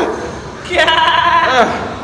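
A person's voice calling out a drawn-out, held vowel of about a second in the middle, wavering slightly and bending in pitch at its end, like a long encouraging shout during exercise.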